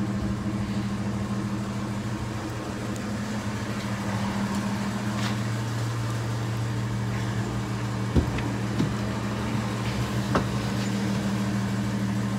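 Vehicle idling with a steady low hum. A few short knocks come about 8 and 10 seconds in.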